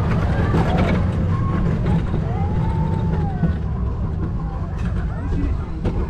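Roller coaster train's wheels rumbling steadily along the steel track as it runs back toward the station and slows near the end, with riders' voices over it.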